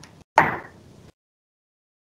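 A single short knock-like sound with a sudden start about a third of a second in, dying away within a few tenths of a second, followed by dead silence.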